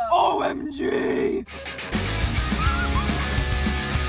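Two girls shouting out together for about a second and a half. Then, about two seconds in, intro music with a steady driving beat starts.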